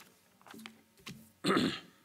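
A man clearing his throat once, briefly and loudly, about one and a half seconds in, just before he speaks.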